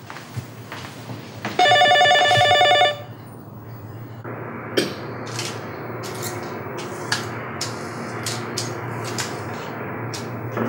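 A telephone rings once near the start, a loud trilling ring lasting just over a second. From about four seconds in, light crinkling and sharp clicks of medicine blister packs being handled.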